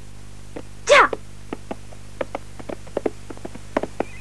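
A short loud cry falling in pitch about a second in, then a horse's hooves clopping at a walk on hard ground, several irregular clops a second.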